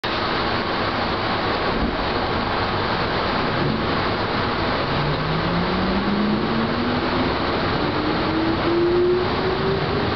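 Chichibu Railway electric multiple unit running on the rails, heard from the cab end, with a steady rumble and rattle of the running gear. From about halfway through, a traction-motor whine rises steadily in pitch as the train gathers speed.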